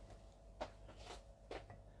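Near silence: faint room hum with three soft, short taps about half a second apart in the second half.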